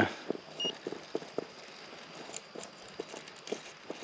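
RC rock crawler's tyres and chassis knocking and clicking on rock as it climbs slowly. The light, irregular knocks come a few per second over a faint hiss.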